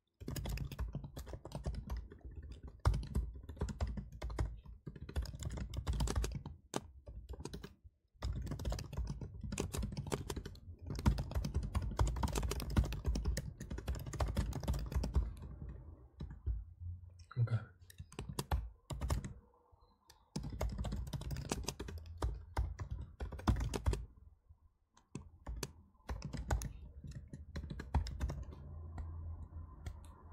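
Typing on a computer keyboard: long runs of quick keystrokes with a few brief pauses between bursts.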